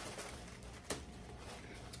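Quiet room tone with one short faint click a little under a second in.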